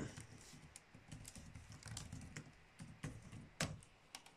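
Faint typing on a computer keyboard: a run of irregular key clicks as a search word is typed, with one louder keystroke a little before the end.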